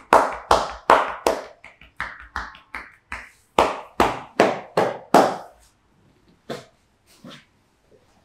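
Percussive back massage: hands striking a clothed back in an even rhythm, about two or three sharp claps a second. The strikes stop about five and a half seconds in, followed by two softer ones.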